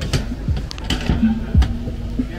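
Cast-iron lever-press chip cutter clacking as potatoes are forced through its blade grid: three sharp clacks, about a second apart. Under them runs music with a deep, thudding beat.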